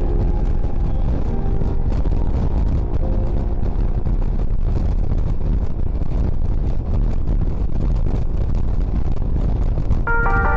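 Motorcycle riding at steady speed: a continuous low rumble of engine, tyres and wind as heard by a camera mounted on the bike.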